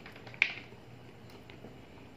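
A single sharp, wet mouth smack about half a second in, as he eats chicken feet with his fingers at his mouth.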